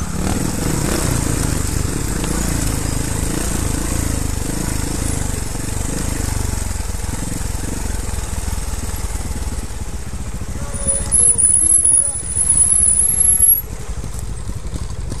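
Trials motorcycle engine running at low revs with an uneven low pulse while descending a steep rocky track. Near the end it gets louder in several short surges, with a thin, high wavering squeal over it.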